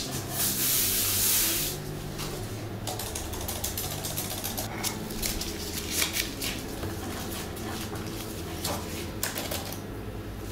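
Baking paper rustling as it is smoothed onto a silicone mat, then a hand-operated metal flour sifter clicking over and over as flour is dusted onto the paper.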